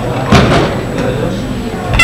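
A single sharp thud about a third of a second in, over a murmur of voices in a large hall.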